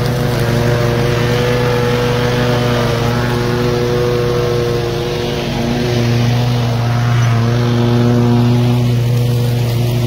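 Ariens zero-turn riding mower running and mowing through grass and brush, a steady engine drone that swells a little about six seconds in.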